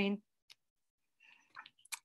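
A woman's voice finishing a word, then near quiet with one faint click about half a second in and a few faint clicks near the end before she speaks again.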